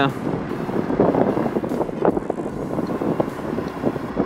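Wind rushing over the microphone, with the Honda Super Cub 110's small single-cylinder engine running underneath as the bike rides along in traffic. The sound is a steady, fluttering rush with no clear engine note standing out.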